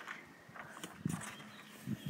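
Three soft thuds on a wooden deck, about a second apart, like footsteps on the boards.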